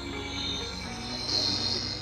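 Cordless dual-action polisher running steadily at speed, its foam pad buffing ceramic polish into a painted panel, with background music playing over it.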